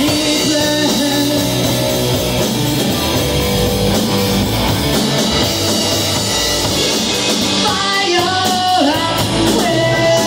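Live rock band playing: electric guitar, electric bass and drum kit, loud and steady, with notes bending in pitch about eight seconds in.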